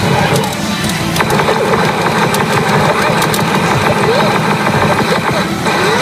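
Newgin CRA Yasei no Oukoku SUN N-K pachinko machine playing its battle-reach music and sound effects, with short character voice samples. A dense run of rapid clicks over a steady hiss goes from about a second in until shortly before the end.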